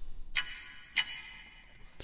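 Clock-tick sample from Logic Pro's Apple Loops playing back in the DAW: two sharp ticks about half a second apart, each with a ringing tail.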